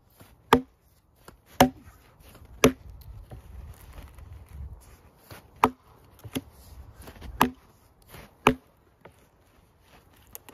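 Axe blows biting into a log to cut it through crosswise (bucking): three sharp chops about a second apart, a pause of about three seconds, then three more with a lighter blow among them.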